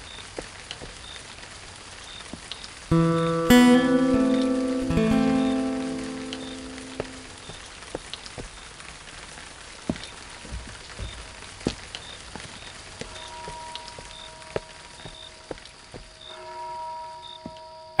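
Steady rain falling, with scattered drips and patters. About three seconds in, a short music cue of plucked-string chords rings out and fades over about four seconds, and faint soft notes come back near the end.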